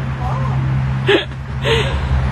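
A person's short voice sounds: two brief breathy bursts, about a second in and near the end, over a steady low hum.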